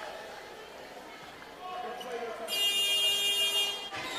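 Basketball arena crowd noise, then about two and a half seconds in a buzzer horn sounds one steady buzz lasting about a second and a half.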